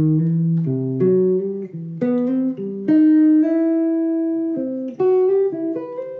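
Electric jazz guitar playing a slow single-note phrase of major-triad tones with leading tones, the notes joined by slides rather than picked as a legato exercise. A new note sounds about every half second to second, with one note held for over a second in the middle.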